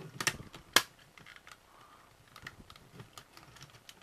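Plastic panels of a Transformers Sentinel Prime toy clicking as they are pushed together into truck mode: a few sharp clicks in the first second, the loudest just under a second in, then fainter clicks and handling rattles.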